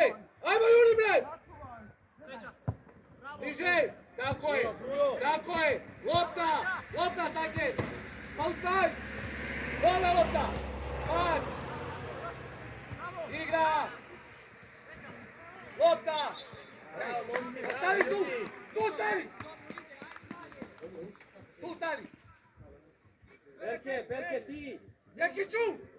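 Men shouting calls across an open football pitch in short bursts, with a low rushing noise that swells and fades around the middle and a single sharp knock early on.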